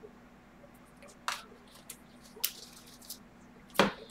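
Plastic-sleeved trading cards being handled: a few short clicks and taps of plastic as the stack is shuffled, and a louder knock near the end as it is set down.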